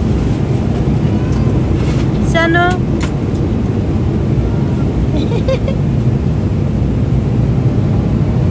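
Steady cabin noise of a jet airliner in cruise flight. A young child's voice is heard briefly about two and a half seconds in, with fainter sounds from it around the middle.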